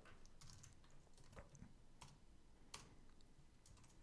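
Faint computer keyboard keystrokes: a handful of scattered, irregular taps over a near-silent room.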